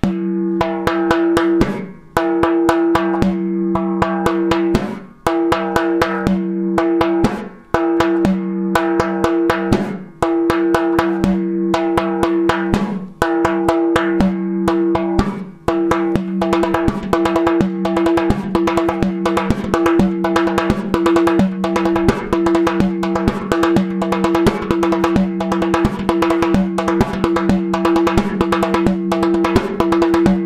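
Frame drum played with the hands in a pattern of three-note groupings (3-3, 3-3, 2-2), over a steady pitched drone. For the first half the pattern comes in phrases of about two and a half seconds with short breaks between them. From about halfway the playing runs on without a break and grows denser.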